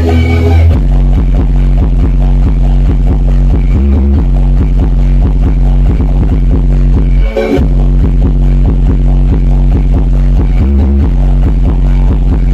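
Loud electronic DJ dance music played through a huge Brewog Audio street sound system, with a heavy, pounding bass line. There is a brief break in the beat about seven seconds in.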